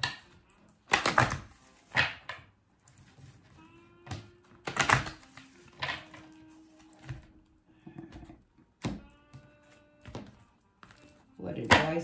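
A deck of tarot cards being shuffled by hand: several short riffling bursts a second or two apart, with quieter card handling in between.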